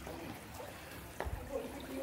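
Faint trickle and lap of shallow stream water around rocks, with a single knock a little over a second in.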